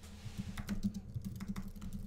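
Typing on a computer keyboard: a quick run of keystroke clicks starting about half a second in.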